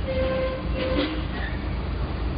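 Railway locomotive running past with a steady low rumble. A short tone of about half a second sounds near the start.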